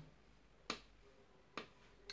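Near silence with two short, sharp clicks about a second apart.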